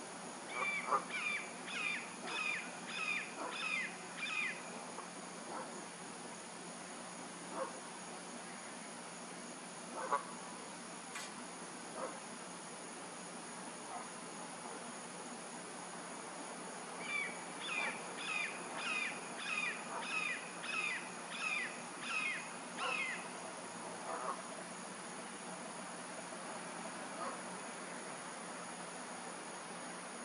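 Red-shouldered hawk calling: two series of repeated down-slurred kee-ah screams, about two a second, one near the start and one about midway through. A steady high-pitched insect drone runs underneath.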